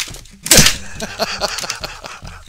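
Product packaging being torn open by hand: a loud rip about half a second in, followed by smaller crackling and rustling.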